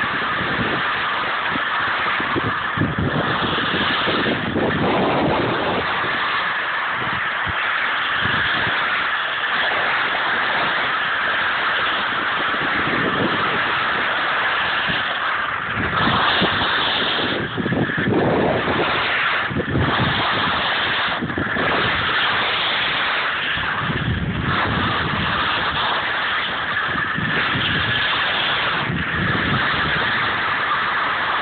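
Wind rushing over a phone microphone and skis sliding over snow on a downhill run: a steady loud rush with low gusts that swell and fade several times.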